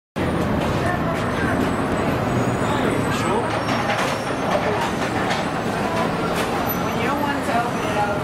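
Steady roadway traffic noise from cars and buses at an airport curbside, with indistinct voices of people nearby mixed in.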